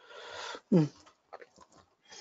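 A breath drawn in close to the microphone, then a short voiced sound falling in pitch, followed by a few faint clicks.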